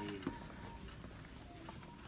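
Department store ambience: one sharp click just after a spoken word, then faint voices and faint music.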